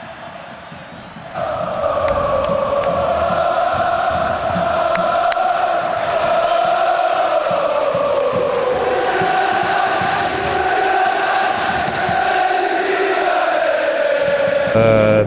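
Large football stadium crowd singing a chant in unison. It swells up about a second in and holds, with the tune shifting pitch partway through.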